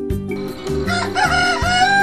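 A rooster crowing once, starting about a second in as one long call that rises and then holds, over background music with a steady low beat.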